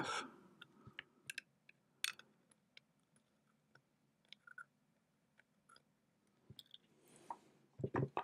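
A dozen or so faint, sharp clicks and ticks at irregular intervals over a near-silent room.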